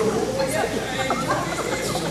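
Indistinct talking and chatter from several voices in a large hall.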